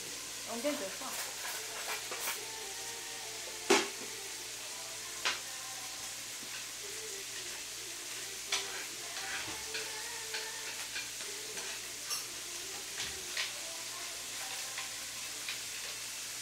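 Meat frying in a pan with a steady sizzle, with a few sharp clicks breaking through, the loudest about four seconds in.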